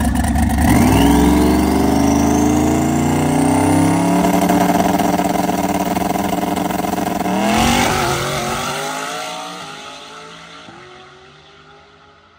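Turbocharged V8 drag car with a three-speed TH400 automatic, revving hard: the engine note climbs slowly in pitch for about seven seconds, changes abruptly near the eight-second mark, then fades away over the last few seconds.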